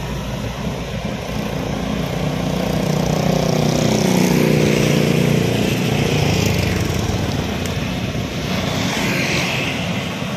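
Diesel engine of a Volvo crawler excavator running under load as it lifts and swings a bucket of soil. The sound swells in the middle as another vehicle passes on the road, then settles back to the steady engine.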